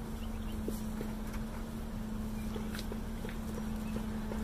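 Steady hum of a mass of honey bees in flight around a hive that a package colony has just been shaken into, with a few light knocks and clicks of handling.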